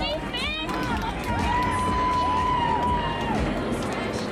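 Finish-line crowd noise with an unclear public-address voice. In the middle a single pitched note is held for about two seconds, with swooping pitch glides around it.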